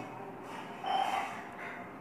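A short, soft intake of breath about a second in, over faint room noise.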